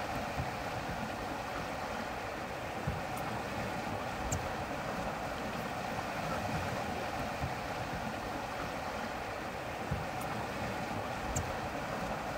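Steady rush of wind and water on a sailboat under way, with a couple of faint high ticks.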